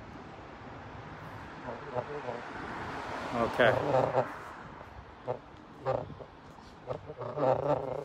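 A man says "okay" once, with a few short vocal sounds after it, over outdoor background noise that swells over the first few seconds and then fades.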